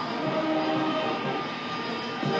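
Military brass band playing slow, long-held chords.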